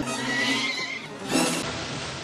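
A high, wavering cry falling in pitch over about a second, then a loud splash of water in a bathtub about a second and a half in.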